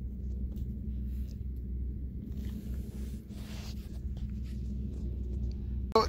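Low, steady wind rumble on the microphone outdoors, with a few faint crunches of footsteps on stony ground around the middle.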